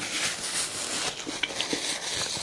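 Paper napkin rustling as it is wiped across the mouth and then folded between the fingers, with a few small clicks about halfway through.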